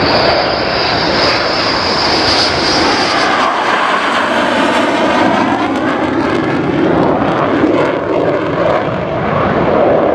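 F-15 fighter jet passing low with its landing gear down, its engines loud throughout. A high whine over the noise fades after about three seconds, and the jet noise then shifts in tone with swirling sweeps as it goes by.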